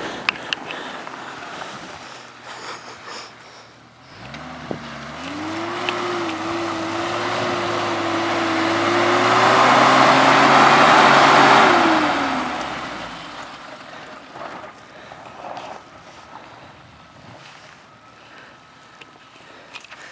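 Jeep Cherokee XJ engine revving up under load about four seconds in and held at high revs for several seconds on a steep, muddy climb, with a rising rush of noise. The revs fall away about twelve seconds in as the climb fails.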